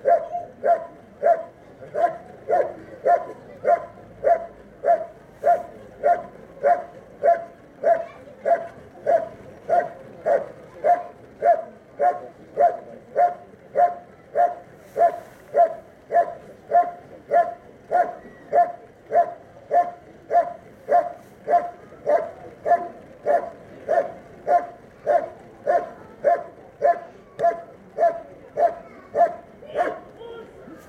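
German Shepherd barking steadily and rhythmically at a helper in a hiding blind, about three loud barks every two seconds without a break. This is the hold-and-bark part of a protection trial, where the dog holds the helper in the blind by barking.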